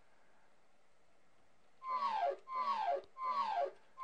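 Microsoft Excel's Classic feedback sound scheme: a short falling tone that glides down in pitch, played three times about 0.7 seconds apart starting about two seconds in, with a fourth beginning at the end, each confirming an edit to the worksheet.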